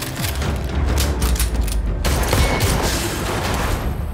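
Dramatic trailer score with a deep, rumbling low end, cut through by rapid bursts of gunfire. The shots come scattered at first and run into a dense volley in the second half.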